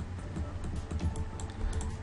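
Scattered light clicks of a computer keyboard and mouse, over quiet background music.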